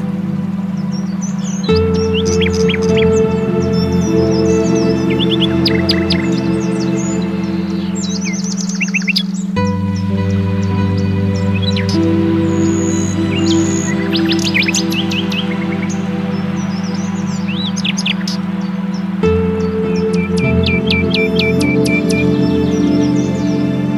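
Ambient meditation music: sustained synthesizer chords over a steady low drone, with the chord changing every eight to ten seconds. Recorded birdsong of short chirps and trills is layered over it throughout.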